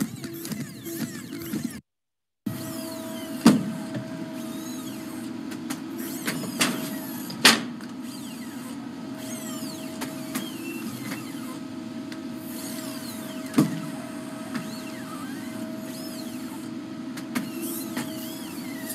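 Boston Dynamics Atlas humanoid robot's hydraulic actuators humming and whining as it moves, with three sharp knocks as it handles boxes. The sound cuts out for about half a second near the start and then resumes.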